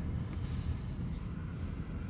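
Low, steady rumble of a car driving slowly through city streets, heard from inside the cabin.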